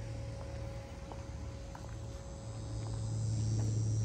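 A steady low hum with a faint higher tone above it, growing slightly louder near the end.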